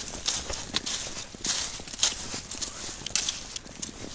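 Footsteps crunching in thin snow at a walking pace, about two steps a second.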